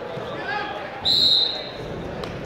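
A referee's whistle blown once, a short, high, steady tone of about half a second that starts about a second in, over a background of voices.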